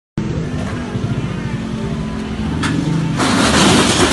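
Engine of a police pickup truck running at idle, a steady low hum. About three seconds in, a loud rushing, scuffling noise of movement takes over.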